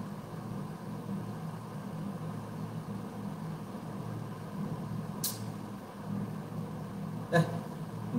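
Steady low background hum with no speech over it, and a single brief sharp click about five seconds in.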